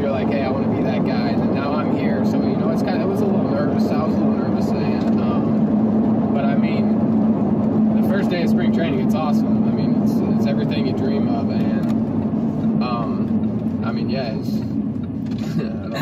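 Steady engine and road drone of a moving car, heard from inside the cabin, with a constant low hum running evenly throughout.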